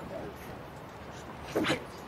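A man's short strained cry during a hand-to-hand struggle, about one and a half seconds in, over low background noise.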